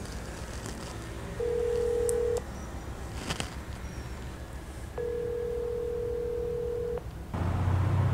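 Telephone ringback tone from a smartphone held to the ear. A short ring comes about a second and a half in, then a two-second ring, each a steady single tone. Near the end a low hum comes on as the call is put through to voicemail.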